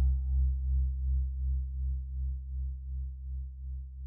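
A low sustained keyboard note with a pulsing tremolo, about two and a half swells a second, slowly fading; a higher ringing overtone dies away in the first second.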